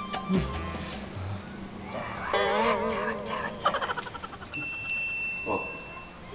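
A warbling, wavering tone lasting about a second, followed near the end by a bright chime that rings on, like comedy sound effects laid over the scene.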